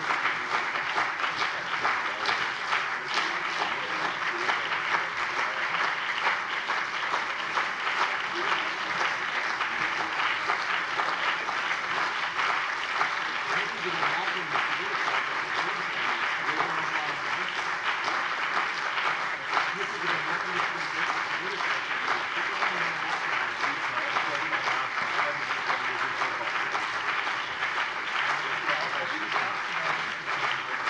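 Long, steady applause from the members of a parliament, many hands clapping without a break, following the close of a speech.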